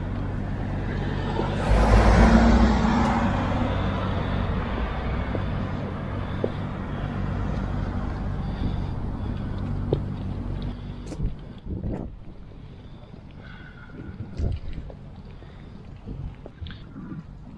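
Street traffic: a motor vehicle's engine running with a steady low hum, and a vehicle passing loudly about two seconds in. After about eleven seconds the traffic dies down to quieter street noise with a few light knocks.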